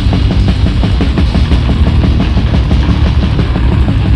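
Death/black metal from a 1996 demo tape: distorted guitars and bass over fast, dense drumming, loud and without a break.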